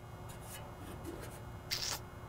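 Faint handling noise: hands rubbing and scraping on the dusty metal of a junkyard car's engine bay and radiator support, with a brief higher hiss near the end.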